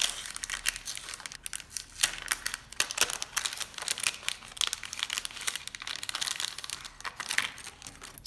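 Clear plastic packaging crinkling as it is handled and pulled open by hand, a dense run of small crackles.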